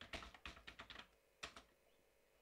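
Faint computer keyboard typing: a quick run of keystrokes through the first second, then a single keystroke about a second and a half in.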